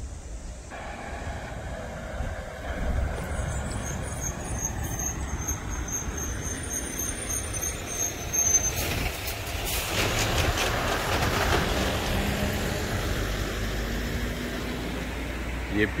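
A large motor vehicle passing, its rumble and hiss swelling toward the middle and easing off, with a thin high whine through the first half.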